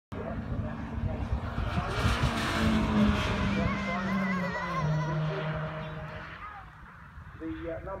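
Racing MG car passing at speed, its engine note loudest two to three seconds in, then dropping in pitch as it goes by and fading away.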